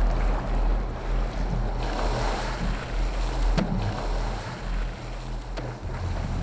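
Seawater splashing and slapping against a boat's hull as a great white shark thrashes at the surface, over a steady low rumble. The splashing swells about a third of the way in, and there is one sharp knock a little past halfway.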